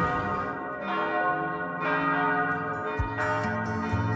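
Church bells ringing: several struck notes, each with a long ringing decay, about a second apart.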